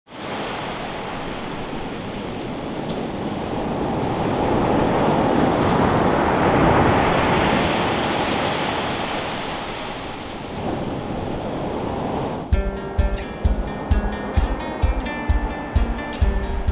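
Ocean surf breaking and washing up a sandy beach, a steady rush that swells and eases. About three-quarters of the way in, music with a beat of about two a second comes in over it.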